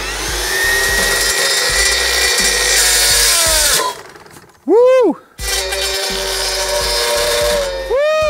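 Greenworks 48-volt cordless brush cutter with a metal blade spinning up and cutting through a hardwood brush handle, a loud rasping cut lasting about three and a half seconds. The motor then gives a quick rising-and-falling whine, runs steadily again and gives another such whine near the end.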